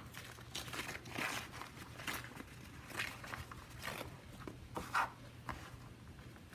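Tear-away embroidery stabilizer being torn and picked away from the stitching on the back of a fabric face mask: a series of short papery rips and rustles, about one a second, the loudest about five seconds in.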